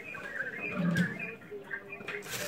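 Faint, garbled voice audio from an ongoing phone call coming through a small phone's earpiece, with a sharp click about a second in.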